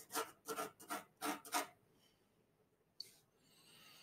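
Quiet pencil strokes on primed canvas: about six short, quick scratching strokes in the first two seconds as the ground shadow under a drawn sphere is shaded in, then a single click about three seconds in.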